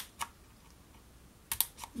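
Paper handling: two short clicks, a quiet stretch, then a brief cluster of crisp clicks and rustles near the end as a folded sheet of design paper is moved about on a wooden tabletop.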